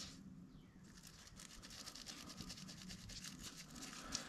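Faint scratching of a pipe cleaner being worked through the small hinge tube of a saxophone key.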